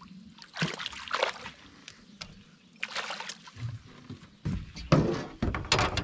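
Small smallmouth bass splashing at the water's surface as it is reeled to the boat: three bursts of splashing, about a second in, about three seconds in, and the loudest near the end as the fish is lifted out.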